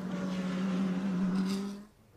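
Race car engine running at steady revs, a steady hum that rises slightly in pitch and then fades out near the end.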